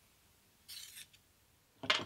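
A brief, quiet metal scrape of a steel plane blade and its chip breaker being handled, lasting under half a second, about two-thirds of a second in.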